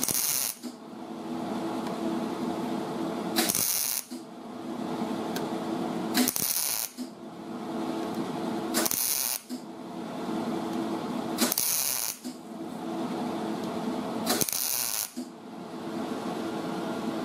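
MIG welder laying spot welds one by one along a lap joint in auto body sheet metal: six short bursts of arc crackle, each about half a second, spaced about three seconds apart. A steady low hum fills the gaps between welds.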